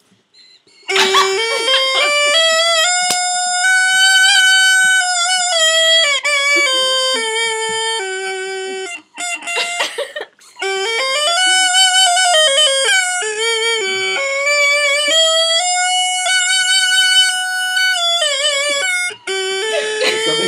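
A plastic recorder fitted with an oboe reed and played as a homemade double-reed chanter, playing a melody of notes stepping up and down in two phrases with a short break about halfway.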